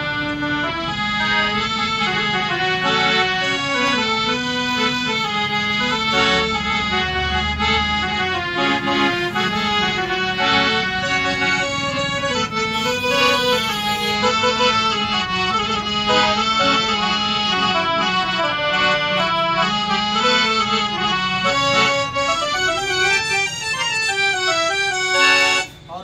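Harmonium playing a reedy melody with several notes sounding together. It cuts off suddenly just before the end.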